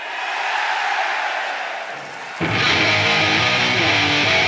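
An arena crowd cheering, then about two and a half seconds in a loud electric guitar riff starts suddenly with a low bass line under it, the opening of a heavy rock song.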